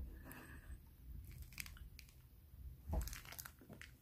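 Close-miked biting and chewing of a hard-frozen red bean and taro ice cream bar, with clusters of sharp crunches about a second in and again around three seconds in.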